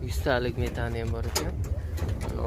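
A man's voice talking over a steady low hum, with a short click about three-quarters of the way through.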